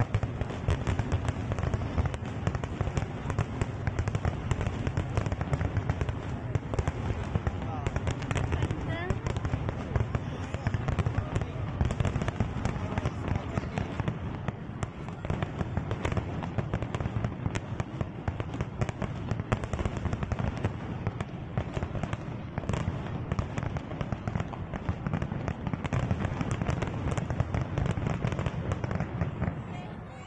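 Aerial fireworks display: a dense, continuous barrage of shell bursts, with rapid bangs and crackling over a low rumble.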